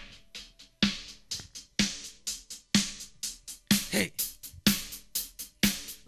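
A sparse hip-hop drum beat: a strong hit about once a second with lighter, crisp hits between, in a steady slow groove.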